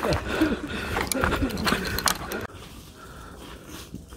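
A mountain bike rattling and knocking over a rough dirt and rock trail, with a man's voice over it. The rattle stops abruptly about two and a half seconds in as the bike comes to a halt, leaving only a faint background.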